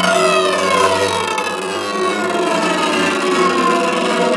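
A loud electronic sound effect of several tones sliding slowly down in pitch together, siren-like, held through the whole stretch.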